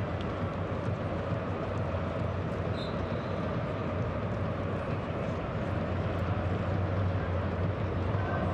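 Steady crowd ambience of a football stadium: a continuous low rumble of many voices, with no distinct cheer or chant standing out.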